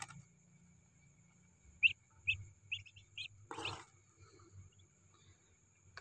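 Newly hatched Muscovy ducklings giving a quick run of about six short, high peeps about two seconds in, followed by a brief rustle.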